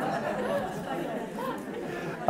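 Audience murmuring: many overlapping voices talking quietly at once, in a steady low hubbub.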